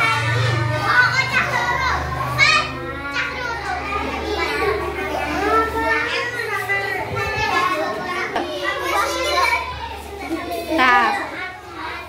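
Young children's voices talking and chattering, high-pitched and continuous, over a faint low steady hum.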